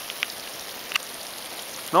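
Steady hiss of water spraying from a slip-and-slide's sprinkler jets, with a couple of faint ticks.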